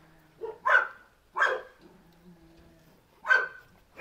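A dog barking: a few short, separate barks, two close together near the start, one about a second and a half in, and one more past three seconds.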